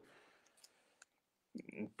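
Near silence in a brief pause in conversation, broken by two faint, short clicks about a second apart; a man's voice starts up again near the end.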